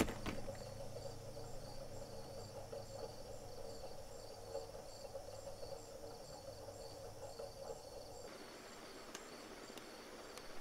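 Faint crickets chirping in a steady, regular rhythm over a low hum, with a sharp click at the very start; the hum drops out about eight seconds in.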